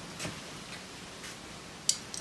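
Small hand-held metal items being handled at a motorcycle seat, making light clicks: a faint tick about a quarter second in and one sharp click near the end.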